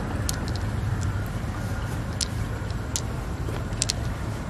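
Pearls clicking against one another and against the mussel shell as they are picked out and dropped into the other shell half: a few short sharp clicks, two in quick succession near the end, over a steady low rumble.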